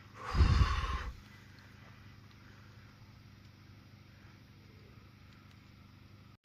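A short puff of air noise hitting the microphone about half a second in, lasting under a second, then faint steady outdoor background hiss.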